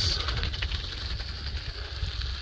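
Low, uneven wind rumble on the microphone of a camera carried on a moving bicycle, over a steady high-pitched buzz.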